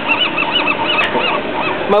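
A bird calling a steady series of short notes that rise and fall, about four a second.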